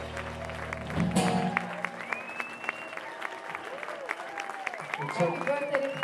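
A rock band's final held chord rings out and ends with a last crashing hit about a second in. Audience applause follows, with whistles.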